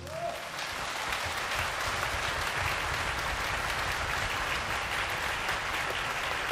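Concert-hall audience applauding. The clapping starts just as the orchestra's final chord dies away, builds within the first second, and holds steady.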